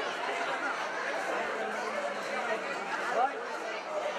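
Crowd chatter: many people talking at once in a steady babble, with no one voice standing out.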